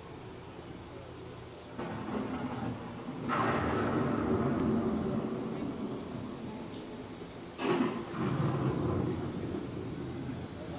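Thunderstorm sound effects played in a dark ride: thunder breaking in about two seconds in, louder about three seconds in, and a sharp crack about seven and a half seconds in, each followed by long rumbling.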